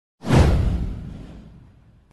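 A single sound-effect whoosh with a deep low boom under it for an animated intro. It swells in suddenly just after the start and fades away over about a second and a half.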